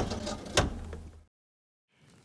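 Tram cab: the driver's controller lever clicks sharply a few times as it is moved through its notches to set off, over a low steady hum. The sound cuts off abruptly just over a second in.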